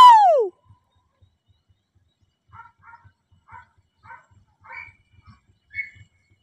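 A single loud, high call sliding down in pitch right at the start, then faint distant barking from hunting dogs: a string of short barks roughly half a second apart over the last few seconds.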